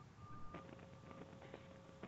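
Near silence on a webinar audio line, with faint steady tones held underneath.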